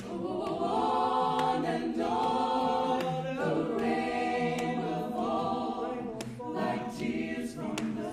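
A vocal jazz ensemble singing in close harmony, holding chords that change every second or so.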